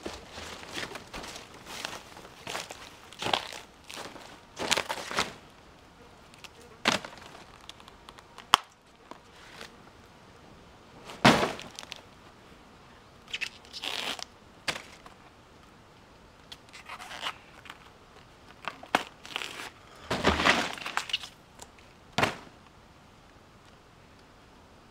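Irregular crackling, tearing and rustling bursts as the purple bracts of a banana flower are peeled and snapped off by hand, with a few sharper snaps.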